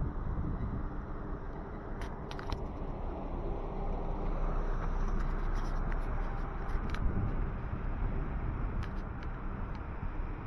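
Street ambience: a steady low rumble of vehicles, with a few sharp clicks scattered through it.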